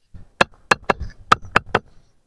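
Brick tiles being tapped lightly into place on a mud mortar bed: six sharp, short knocks in quick, uneven succession over about a second and a half.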